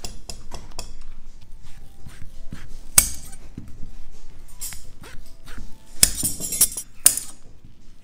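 Large metal kitchen shears cutting through a sheet of pulled candy and clacking on the work surface: a few light clicks at first, then several sharp snips a second or two apart. Faint background music underneath.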